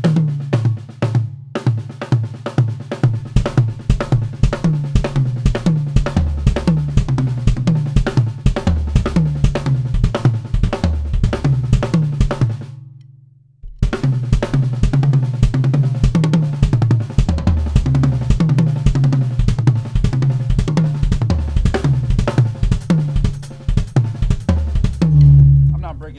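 Tama drum kit played fast: rapid strokes moving around the toms and snare with bass drum and cymbals, one pattern and its stretched-out variations. The playing stops for about a second just before the middle, starts again, and ends on a loud low drum hit.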